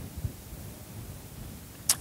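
A pause in a lecture: faint, steady room hiss from the hall's microphone, with a short breathy intake just before the speaker talks again.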